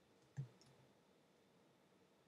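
A single keystroke on a computer keyboard, a short sharp click about half a second in with a fainter tick just after, in otherwise near silence.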